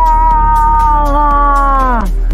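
A woman imitating a cow moose's call with her own voice, a ploy to lure a bull moose. It is one long, drawn-out wail that slowly falls in pitch and then drops away sharply at the end.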